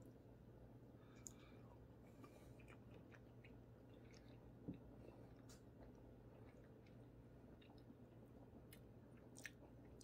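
Near silence with faint, scattered mouth clicks of a man chewing a bite of soft Brie cheese, one a little louder about halfway through.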